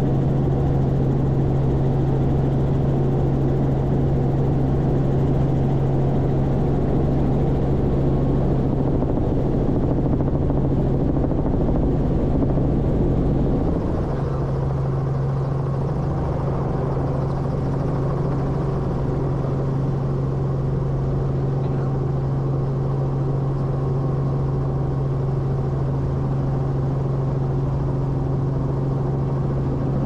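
Helicopter engine and rotor heard from inside the cabin: a steady drone with a constant low hum, a little quieter from about halfway through.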